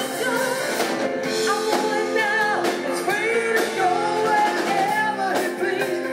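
Live rock band: a woman singing lead over electric guitar, bass guitar and drums, with a steady drum beat.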